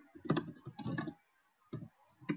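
Computer keyboard keystrokes typing a command: a quick run of key presses, a short pause, then one more keystroke near the end.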